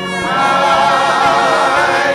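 Gospel choir singing, its voices coming in strongly about a third of a second in on wavering held notes with vibrato.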